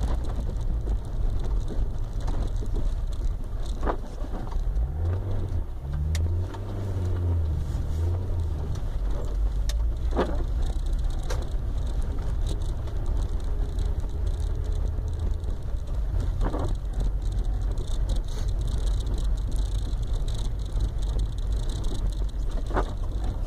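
Car interior sound while driving slowly on a snow-covered street: a steady low rumble of engine and tyres, with the engine note rising and falling about five to nine seconds in. A few short knocks break in, about every six seconds.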